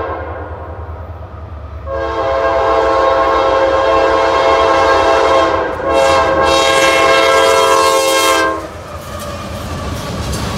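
A CSX freight locomotive's air horn sounding for a grade crossing: a long blast from about two seconds in, a brief break, then another long blast that cuts off about a second and a half before the end. A low rumble of the approaching locomotives runs underneath and grows louder near the end as the train reaches the crossing.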